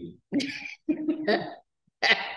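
A person making two short non-speech vocal sounds in quick succession, in the manner of a chuckle or a clearing of the throat.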